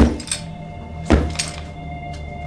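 Tense film score of sustained, droning tones, broken by two heavy thuds: one at the very start and another about a second in, followed by a lighter knock.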